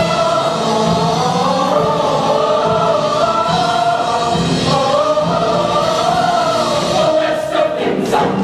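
Large mixed-voice show choir singing long held notes in harmony, with a few sharp hits near the end.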